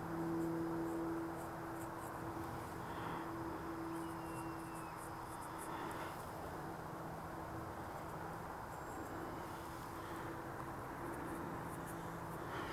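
Quiet outdoor ambience: a faint steady hum with faint, scattered high insect chirps.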